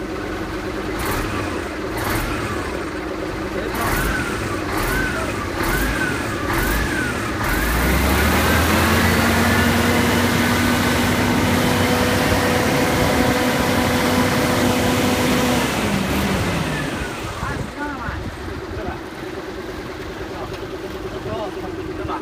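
Scania truck's diesel engine being free-revved: a few short blips of throttle, then held at high revs for about eight seconds before dropping back to idle.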